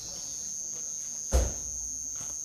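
Insects trilling steadily on one high note, with a single dull thump about one and a half seconds in.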